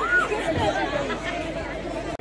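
Several people talking at once, overlapping voices over a general murmur.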